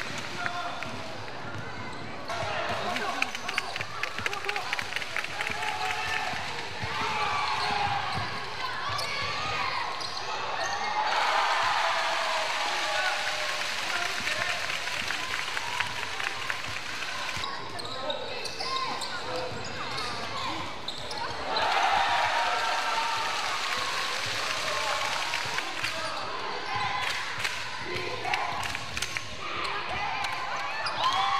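Basketball being dribbled on an indoor gym floor in runs of repeated bounces during play, with players' voices calling out over the court.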